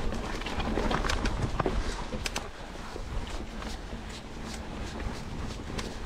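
Mountain bike rolling down a dirt singletrack: steady tyre and trail rumble with scattered sharp knocks and rattles as the bike goes over roots and rocks.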